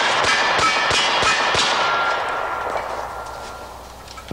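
IAI Model 5000 .45 ACP 1911-style pistol fired in a rapid string of shots, about three a second, each report echoing. The shots thin out and the echoes fade away over the last two seconds, over a faint ringing tone.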